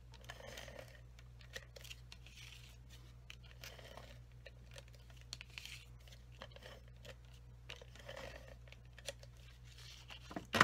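Faint tape-runner adhesive (Stampin' Seal) being drawn in short strokes across the back of a cardstock panel, with soft paper handling and small clicks.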